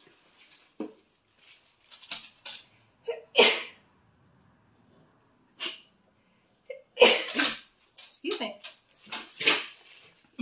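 Tissue paper and plastic packaging rustling and crinkling in short irregular bursts. There is a loud sudden burst about three and a half seconds in and another cluster from about seven seconds on.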